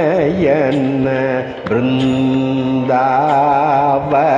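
A man singing a Carnatic kriti in raga Thodi, holding long notes that waver up and down in pitch in ornamented gamakas, over a steady low drone. A short break falls about one and a half seconds in, before the next held note.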